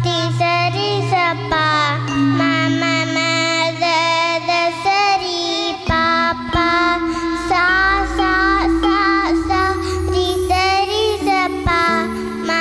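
A young girl singing a melody into a microphone with ornamented, sliding pitch, over an instrumental backing of sustained low notes and a steady beat.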